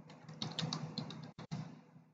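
Typing on a computer keyboard: a quick run of light keystrokes, about a word's worth, stopping shortly before the end.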